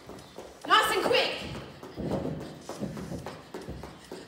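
Quick, irregular footfalls of someone sprinting in place with high knees on a foam exercise mat. A brief voiced call comes about a second in.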